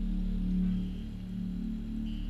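Film background score: a low, sustained droning tone that swells and then eases off, with a faint high tone above it.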